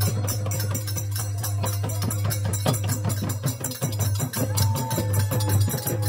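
Traditional village Holi (phagua) music played live: a hand drum keeps a steady beat while many small hand cymbals clash in a fast, even rhythm. Voices hold a sung line in the second half.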